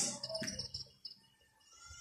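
Whiteboard marker squeaking as a word is written on the board: a thin, high, faint squeak through about the first second.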